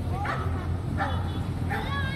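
A dog barking: three short barks, a little under a second apart.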